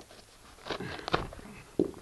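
Short rustles and scrapes of a damp paper postal package being handled, about a second in and again near the end.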